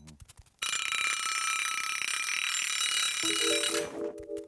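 A red twin-bell alarm clock ringing loudly for about three seconds. It starts just over half a second in and cuts off suddenly near the end, with a lower steady tone joining it in the last second.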